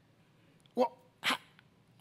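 A man's two short wordless vocal sounds, a brief voiced one followed about half a second later by a breathy one, heard through a room microphone.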